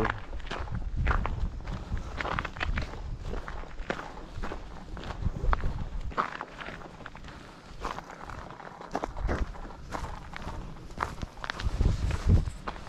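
A hiker's footsteps on a rocky dirt trail, a steady run of irregular steps, over a low rumble on the microphone.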